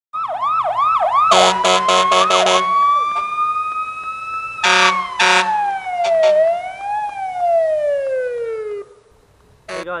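Siren sound effect: a run of fast rising whoops, then short horn-like blasts, then a long wail that climbs, dips and slides steadily downward before dying away near the end.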